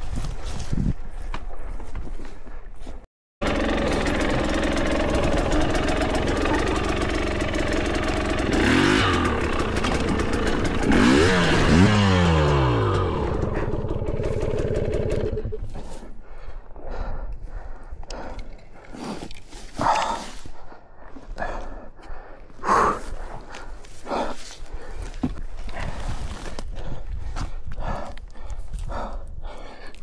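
Two-stroke enduro motorcycle engine running, revving with its pitch rising and falling about nine to thirteen seconds in, then stopping about halfway through. Scattered clattering and rustling follow, from the bike being handled on rough, grassy ground.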